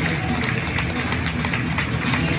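Stadium public-address music playing over the ground, with scattered clapping from the crowd in the stands.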